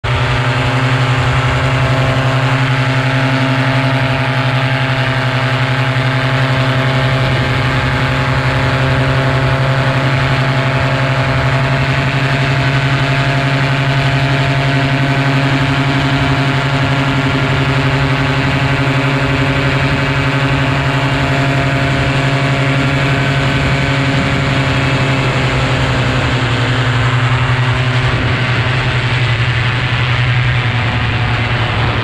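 Tandem paramotor's engine and propeller running steadily at cruise power in flight, a loud, even drone. Its tone shifts slightly near the end.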